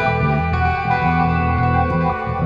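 Band music: guitar played through effects, over bass notes and sustained chords.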